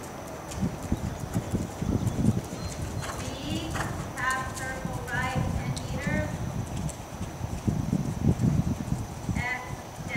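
A horse trotting on soft arena footing: a steady run of low hoofbeat thuds.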